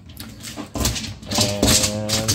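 Rustling and scraping as a tape measure and hand are worked across an SUV's rubber cargo liner, in short bursts about a second in and again near the end, under a drawn-out spoken "and".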